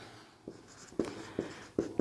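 Marker pen writing on a whiteboard: about four short strokes about half a second apart, quieter than the speech around them.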